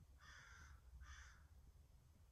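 Two faint crow caws, the first about half a second long and the second shorter, about a second apart, over near-silent room tone.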